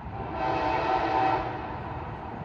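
Locomotive air horn sounding one blast of about a second.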